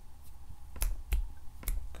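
A few sharp clicks at a computer desk: a faint one, then three louder ones a third to half a second apart, each with a dull knock under it.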